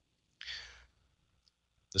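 A single short breath from a man speaking into a microphone, about half a second in, with near silence around it.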